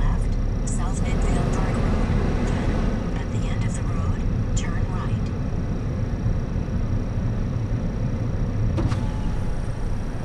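Car driving slowly, heard from inside the cabin: a steady low engine and tyre rumble. Short, high chirps come and go in the first half, and there is a single click near the end.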